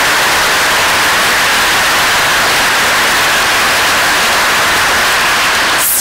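Audience applauding in a hall, a dense, steady clapping that cuts off suddenly near the end.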